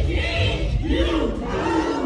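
A dance team shouting a chant together in unison, a few loud calls that rise and fall in pitch, echoing in a large hall.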